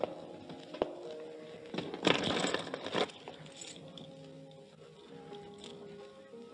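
Radio-drama background music, held tones under the scene, with a sharp click a little under a second in. About two seconds in comes a harsh burst of noise lasting about a second: a sound effect that falls where the jewel is taken from the idol.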